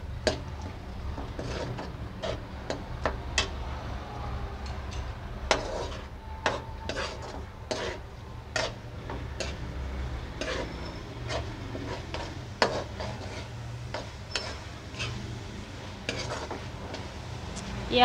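Metal spatula scraping and tapping irregularly against a coated kadhai while stirring minced meat frying in oil with masala, over a low sizzle.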